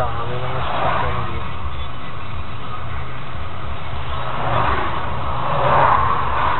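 A motor vehicle's engine running steadily, with indistinct voices at the start and again near the end.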